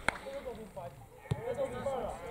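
Open-air amateur football match: faint, distant shouts of players on the pitch with a couple of sharp knocks, the first as the ball is kicked into a pass, another about a second and a half in.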